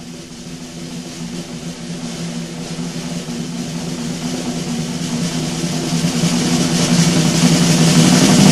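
Closing stage crescendo: a sustained low drone under a rushing noise that swells steadily louder throughout.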